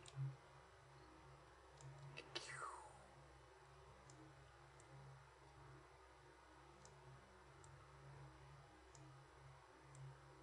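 Near silence: room tone with a few faint computer mouse clicks, and a brief falling squeak about two and a half seconds in.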